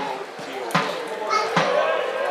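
A small group of football supporters chanting together, with a drum beaten steadily a little more than once a second.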